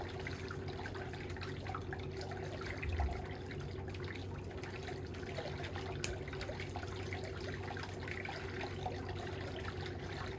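Steady hum of a running motor with a whooshing hiss, a soft thump about three seconds in and a sharp click about six seconds in.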